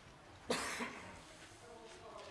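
A single short cough about half a second in, within a quiet room.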